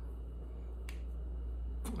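Quiet room tone with a steady low hum. Two faint, sharp clicks come about a second apart, one about a second in and one near the end.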